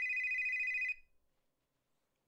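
Phone ringing with a high, rapidly trilling electronic tone, which cuts off about a second in.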